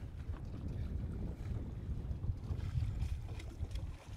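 Wind rumbling on the microphone: an uneven low rumble with a few faint ticks.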